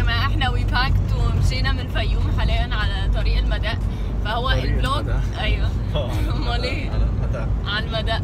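Steady low rumble of a car on the move, heard from inside the cabin, under people's voices.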